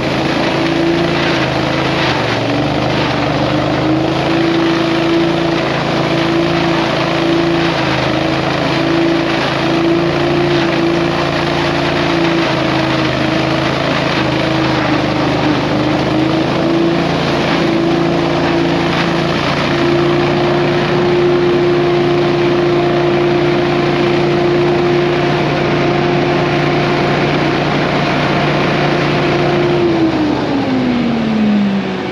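Small engine of lawn-care power equipment running steadily at high throttle, its pitch stepping up or down slightly a few times.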